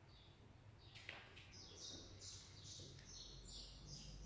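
Near silence: room tone with faint, high bird chirps repeating from about a second and a half in, and a faint click about a second in.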